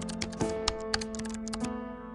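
Rapid, irregular computer-keyboard typing clicks over soft background music with held chords; the clicks stop near the end.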